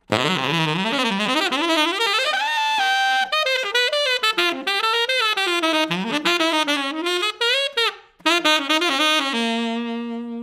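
Tenor saxophone playing a fast modern jazz line built from melodic cells, articulated with a mix of doo-den and doo-dah tonguing. The line winds quickly up and down, breaks briefly about eight seconds in, and ends on a long held note.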